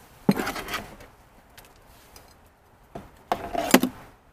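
A small hand trowel scraping and scooping potting soil into a ceramic planter: two short bursts of gritty scraping with sharp clicks, about three seconds apart.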